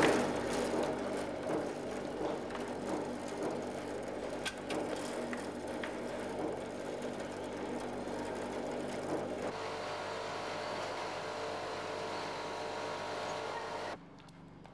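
Machinery running with a steady hum and a few scattered clicks. About nine and a half seconds in, the sound changes abruptly to a different steady machine tone.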